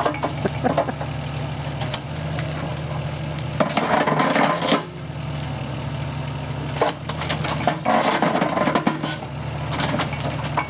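Excavator-mounted Baughan's 18-inch bucket concrete crusher at work, concrete rubble clattering and crunching inside it over the steady run of the excavator's engine. The crunching grows louder in two spells, about four and eight seconds in.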